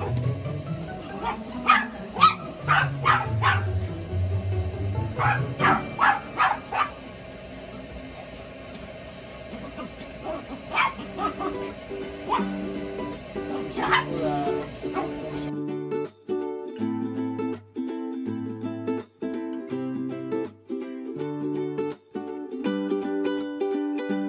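A puppy barking and yipping in quick runs of short barks over background music. About two-thirds of the way through, the barking and yard sound stop and only the music plays on.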